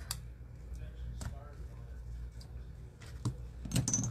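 Scissors snipping a few times, trimming the loose ends of a linen-thread bow: short sharp clicks about a second in and twice near the end, over a low steady hum.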